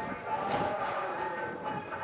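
Soft background music: a sustained chord of several steady held tones with no beat.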